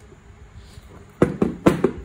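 Two sharp knocks about half a second apart, a bit over a second in, as the aluminium gear-reduction unit is handled and set against the workbench.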